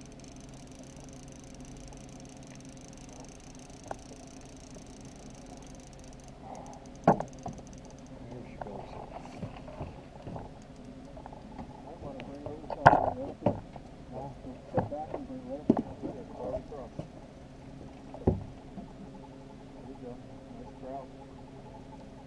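Small outboard motor running steadily at low trolling speed, with several sharp knocks and clunks on the aluminium boat, the loudest about thirteen seconds in.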